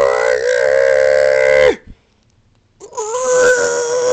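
A man's vocal imitation of a TIE fighter's engine scream: two long held cries at a near-steady pitch, the second starting about a second after the first breaks off.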